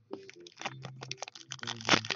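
Foil wrapper of a hockey card pack crinkling and tearing as it is opened by hand: a quick run of crackles, with a louder rip near the end.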